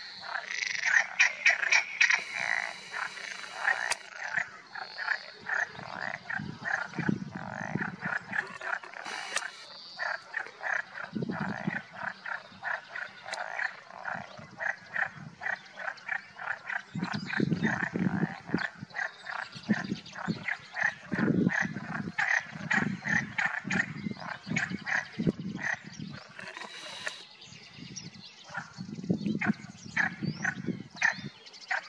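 A chorus of pond frogs calling continuously in fast, chattering croaks, with deeper croaks breaking in every few seconds.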